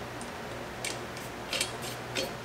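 A few light metallic clicks as a steel bolt is set through the heim joint of the torque rod mount on a rear axle housing: one click about a second in, then a quick cluster shortly after.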